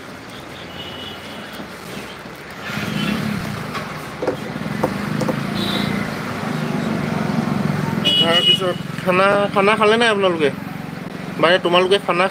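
A motor vehicle's engine running close by, a steady low hum that swells in from a few seconds in and carries on for several seconds. A person's voice with a wavering, drawn-out pitch comes in over it in the last few seconds.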